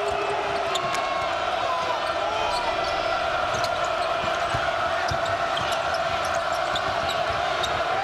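Arena crowd din during live basketball play, with a basketball bouncing on the hardwood court and a few short sneaker squeaks about one to three seconds in.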